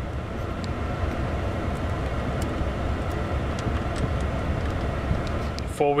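Steady low rumble and air hiss inside the cab of a 2008 Chevrolet Silverado pickup: the engine idling with the climate-control blower running, unchanging throughout.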